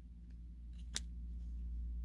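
A plastic toy crossbow being handled, giving one sharp click about a second in, with a couple of fainter clicks before it, over a steady low hum.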